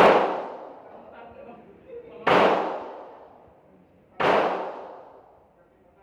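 Three handgun shots about two seconds apart, each followed by a long echo dying away in the enclosed indoor range.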